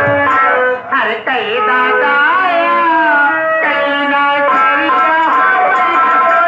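Live music from a nautanki troupe's accompanists: a melodic instrument plays a loud tune with several sliding notes.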